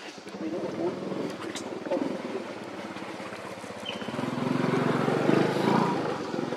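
An engine running steadily, with a low, rapidly pulsing note that grows louder about four seconds in.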